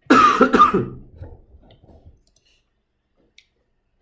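A person coughing right at the start, loud at first and dying away within about two seconds.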